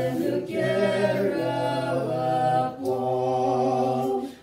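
A small mixed group of two men and a woman singing an Angami Naga praise hymn in slow, held notes, with a short pause for breath near three seconds in.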